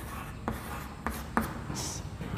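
Chalk being written on a chalkboard: a few sharp taps as the chalk strikes the board, with short high scratches as digits and a plus sign are drawn.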